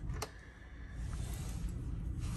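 A single light click from a brass elevator call button being pressed, then low, steady room noise.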